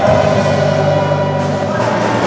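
A live band with a horn section, electric guitars and drums playing a song, holding long sustained notes that change about two-thirds of the way through.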